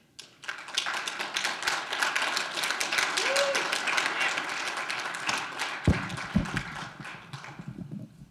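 Audience applauding, dying away toward the end, with two heavy thumps about six seconds in.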